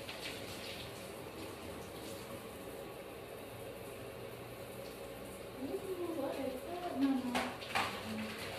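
A steady low background hiss, then, about five and a half seconds in, a person's voice sliding up and down in pitch for about two seconds, followed by two sharp clicks near the end.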